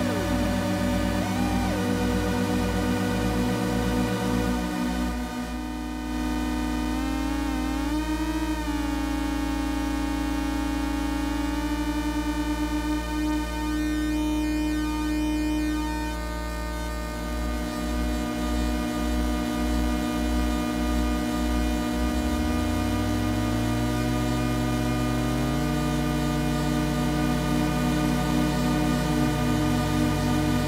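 Pocket Drone analog drone synthesizer, its many oscillators sounding together as a layered held drone with slow pulsing where the tones beat against each other. The pitches glide as its tuning knobs are turned, about eight seconds in and again from about twenty-two seconds.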